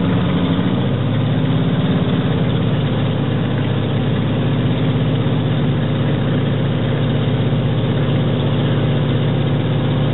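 Antonov An-2's nine-cylinder radial engine (Shvetsov ASh-62IR) running steadily at low power while the biplane taxis, heard from inside the cabin.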